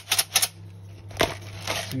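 Hand-turned spice grinder crunching as it is twisted: a quick run of gritty clicks near the start and another turn about a second later.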